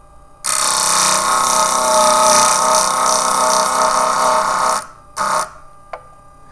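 Fired glass enamel on a silver pendant ground against the spinning diamond disc of a Jewel tool, a steady high grinding sound that starts about half a second in and lasts about four seconds. It is followed by a brief second touch to the disc near the end. The grinding takes the excess glass off the silver.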